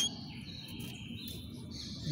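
Canary singing a faint, steady high trill that shifts up to a higher note about half a second in and holds it.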